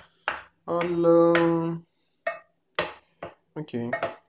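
Wooden spoon stirring a thick chopped-mushroom mixture in a bowl, with short scrapes and knocks against the bowl. About a second in, a person's voice holds one steady note for about a second, louder than the stirring.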